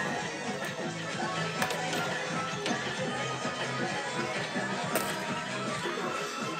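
Electronic arcade music playing continuously from the prize pinball machine, with scattered sharp clicks as the ball knocks about the pins and holes of the playfield.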